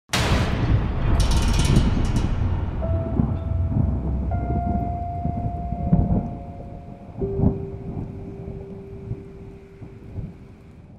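Intro sound design: a sudden thunderclap at the very start, then a rolling thunder rumble with long held musical tones entering about three seconds in and a lower one about seven seconds in, the whole fading gradually.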